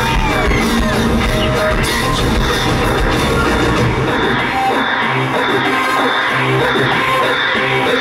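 Live rock-band music played loud on a concert stage, with heavy drum hits at first; about halfway through the low drums drop out, leaving held low bass notes under the band.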